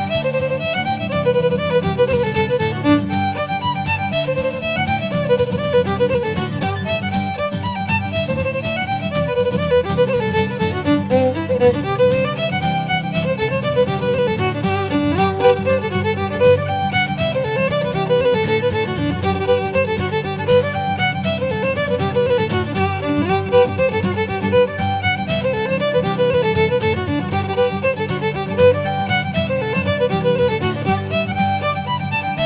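Irish traditional dance tunes played on fiddle with acoustic guitar accompaniment: a quick, steady run of fiddle melody notes over continuous guitar chords.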